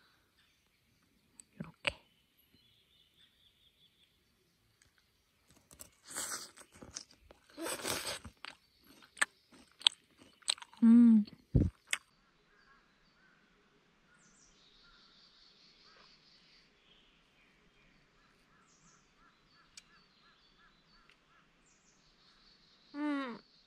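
A person chewing a mouthful of grilled pork belly with green onion kimchi close to the microphone, with crunching and a few clicks of tongs, and a short hummed "mm" of enjoyment about eleven seconds in. Faint birdsong in the background later on.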